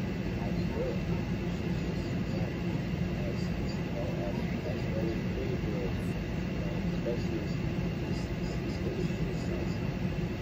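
Faint talking over a steady low rumble.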